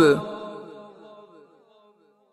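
A man's chanted Quran recitation: his last held note breaks off at the start, and its reverberant tail fades away over about a second and a half into silence.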